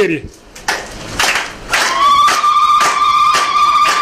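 Crowd clapping in a steady rhythm, about three claps a second. About two seconds in, a long, high, held tone joins the clapping.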